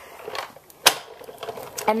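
Sizzix Big Shot die-cutting machine being hand-cranked, the cutting-plate sandwich rolling back through the rollers on the second pass that makes sure the die cuts all the way through. Quiet mechanical noise with one sharp click about a second in.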